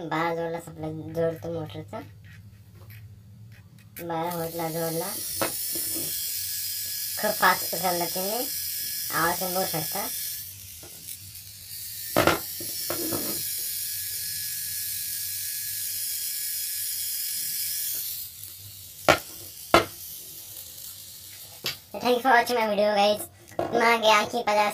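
Small DC gear motor running with a steady buzzing whine while it winds a string tied to its shaft, pulling a stack of weights as a load. It runs in two stretches, from about 4 s to 10 s and again from about 12 s to 18 s, with a few sharp clicks in between and after.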